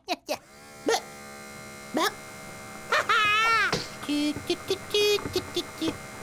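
A cartoon chick's squeaky wordless vocalizations: a few short chirps, a longer wavering cry about three seconds in, then rapid chattering near the end. Underneath, a steady electric hum sets in about half a second in.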